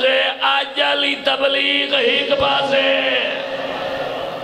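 A man's voice chanting a melodic, sung recitation through a microphone and loudspeakers, holding long notes with gliding pitch; it fades out about three seconds in.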